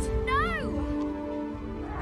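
A hippogriff's short cry, rising then falling in pitch, over a sustained orchestral film score.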